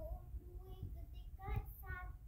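A faint high-pitched voice sounding a few short held notes, over a low rumble from the phone being carried and handled.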